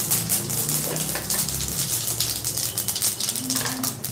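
Mustard and cumin seeds crackling and spluttering in hot oil in a kadai, a dense run of quick pops, as the tempering begins.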